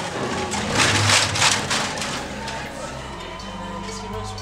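A clattering rattle of metal cans on a costume, a few quick loud shakes about a second in, over background music with a low bass line that builds near the end.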